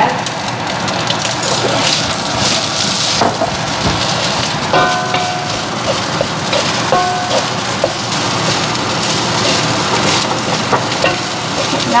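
Fried rice sizzling steadily in a hot wok, with crackles and the scrapes and knocks of a wooden spatula stirring it against the pan.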